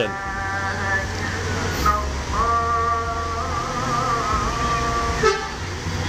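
A coach's multi-tone horn sounding twice: a held chord that stops about a second in, then a longer chord from about two seconds in to near the end, its top note wavering like a tune. A low engine rumble runs underneath.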